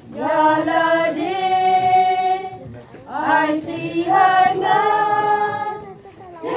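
A choir singing a hymn in slow phrases of long held notes, with a short breath about three seconds in.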